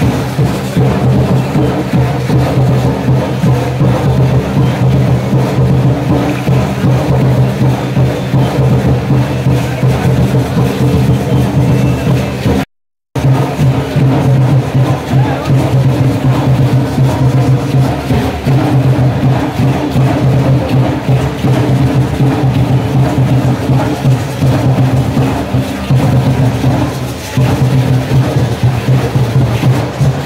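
Loud live music for a Concheros dance, with steady drumming and percussion. It cuts out completely for a moment just under halfway through.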